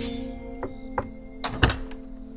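A held soundtrack chord under four sharp knocks, irregularly spaced about half a second apart, the last and loudest near the end.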